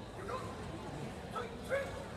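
Several brief shouted calls from voices in a sports hall, the loudest near the end, over a steady background hubbub of the hall.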